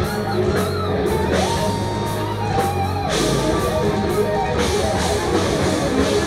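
Heavy metal band playing live: distorted electric guitars, bass and drum kit. About a second and a half in, a lead guitar note glides up and is held for about a second and a half.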